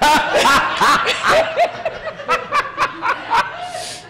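A congregation laughing, several voices overlapping, loudest at first and dying away towards the end.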